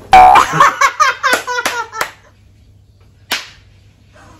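A woman's loud squeal at the start, with several sharp smacks over the first two seconds, then a pause and a single sharp smack about three seconds in.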